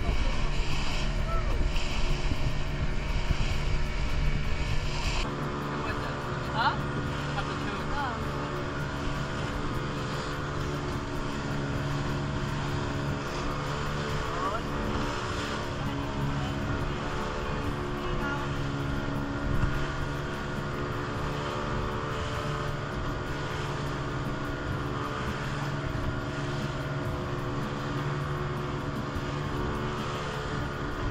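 A steady engine drone with people talking in the background; a louder rumble over it stops about five seconds in.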